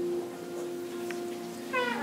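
Acoustic guitar played live, a chord sustaining steadily between sung lines, with the voice coming back in on a rising note near the end.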